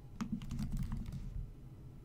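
Computer keyboard being typed on: a short run of separate keystrokes while a word is entered.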